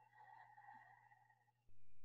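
Near silence with faint steady tones, then a low, even hum that comes in near the end.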